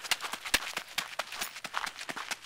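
Footsteps of a slow jog on a gravel dirt trail: a steady crunching rhythm of about three or four steps a second, with one louder step about half a second in.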